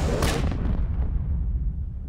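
Film sound effect of a massive explosion: a deep rumbling blast with a second crack just after the start. Its hiss dies away over the next second while the low rumble carries on.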